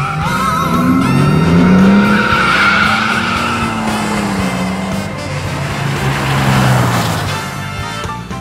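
Two sport pickups, a 1989 Dodge Dakota Shelby V8 and a 1991 GMC Syclone turbocharged V6, launching side by side in a drag race. The engines rev hard, their pitch climbing about a second in, and the tires squeal.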